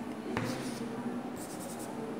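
Chalk writing on a chalkboard: a tap as the chalk meets the board, then a short run of scratchy strokes a little after halfway.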